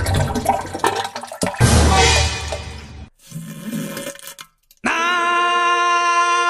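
A loud rushing, water-like noise for about three seconds, then a short silence, and near the end a held, steady sung note begins.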